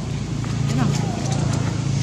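A steady low engine-like hum, with a few faint, short squeaks over it.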